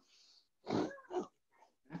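A faint hiss at the start, then two short breathy vocal sounds about a second in.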